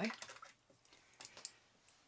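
A few faint, light clicks and taps spread over a couple of seconds in a quiet room, after the end of a man's word at the start.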